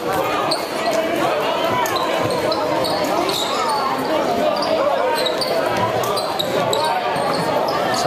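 A basketball being dribbled on a hardwood gym floor, with short sharp bounces, under steady chatter from the spectators in the gym.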